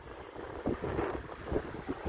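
Wind buffeting the microphone, an uneven low rumble, with a few faint knocks.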